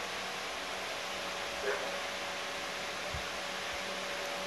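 Steady background hiss of room tone, with a faint brief sound a little before two seconds in.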